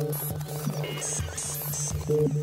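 Drum and bass electronic music: a held low bass note under short, stepping high synth bleeps, with a few deep sub-bass hits.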